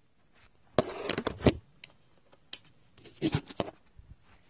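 Handling noise from a phone camera being moved and set down on a desk: two clusters of clicks, knocks and scrapes, about a second in and again about three seconds in.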